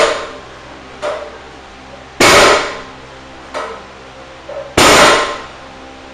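Loaded barbell with iron plates coming down on a plywood platform during dead-stop deadlift reps: two loud bangs about two and a half seconds apart, each ringing away, with a lighter clank about a second before each.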